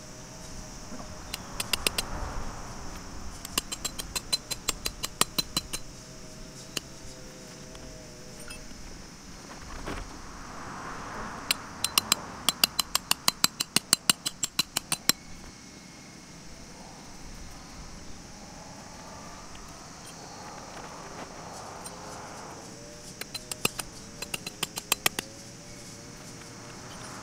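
Tent pegs being hammered into the ground: several runs of quick strikes, about four a second, with pauses between as the next peg is set.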